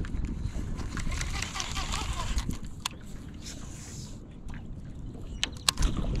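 Steady wind rumble on the microphone over water lapping around a fishing boat, with a stretch of hiss in the first couple of seconds and a few short sharp clicks near the end.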